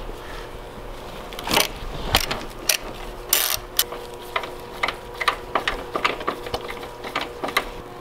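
Hand ratchet on a long socket extension clicking while undoing 12 mm bolts, with metal tool knocks. A few separate clicks come first, then a quicker run of clicks, a few per second, in the second half.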